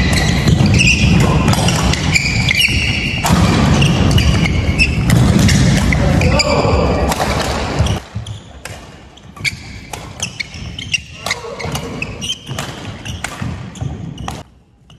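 Doubles badminton rally on a wooden court in a large hall: rackets cracking against the shuttlecock, shoes squeaking and feet landing on the floor. It is busy for the first half and then goes quieter, leaving scattered footsteps and taps once the rally ends.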